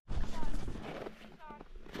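Footsteps crunching through snow as someone hurries toward a fishing hole, with a voice calling "It's on" faintly.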